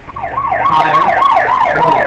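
Simulated police-car siren from a Doppler-effect applet, starting a moment in: a fast yelping wail that rises and falls about three times a second as the animated car approaches.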